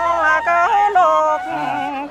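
Muong folk singing (hát chào, a greeting song): a voice sings in a wavering, ornamented line with slides in pitch, accompanied by a transverse flute.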